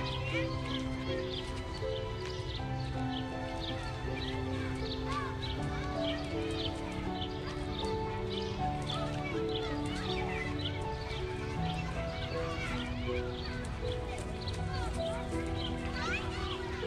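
Slow background music of long held, gently changing notes, with small birds chirping repeatedly over it.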